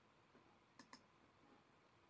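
Two faint computer mouse clicks in quick succession, about a second in, against near silence.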